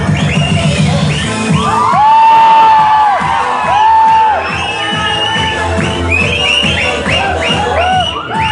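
Dance music playing with a steady beat, while an audience whoops and cheers; two long, loud whoops stand out about two and four seconds in.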